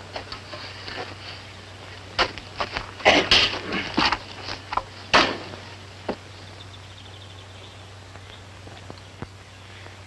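Pickaxe striking rocky ground in a handful of irregular blows, the last about six seconds in. A low steady hum runs underneath.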